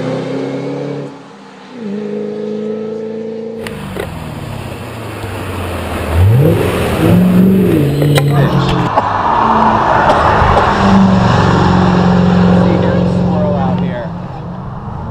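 A 2008 Ford Shelby GT500 hill-climb car's supercharged V8 pulling up a mountain road: the revs drop off briefly just after the start, then sweep up and down several times about halfway through as it accelerates through a corner, and the car passes close by at a loud, steady note.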